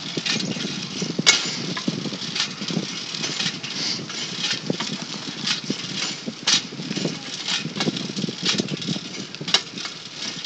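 Bicycle rolling along a concrete sidewalk, its parts rattling with irregular clicks and knocks over the pavement, over a steady rushing noise. One sharper click comes about a second in.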